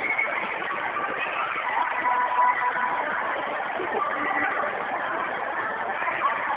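Steady din of a busy indoor ice rink: a wash of distant voices and skating noise, with no single sound standing out.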